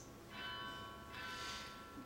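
Monastery bell ringing, struck twice less than a second apart, each strike ringing on with lasting overtones.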